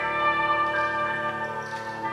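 Wind orchestra playing sustained, held chords, with a ringing bell-like quality in the upper notes.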